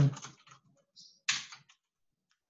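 Typing on a computer keyboard: a handful of short key clicks in the first second and a half, then it stops.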